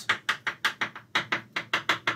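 Chalk tapping on a chalkboard as a row of data points is dotted onto a graph: a quick series of sharp taps, about five a second.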